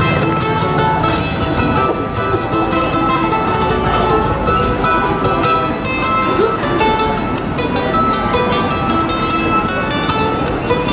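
A busker playing a small acoustic plucked string instrument, a quick run of plucked notes.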